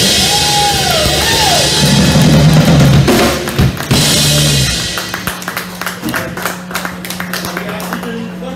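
A live rock band with drum kit and electric guitars plays loud, with a bending sung or guitar note near the start, and the song ends about five seconds in. A steady low hum and scattered small knocks follow.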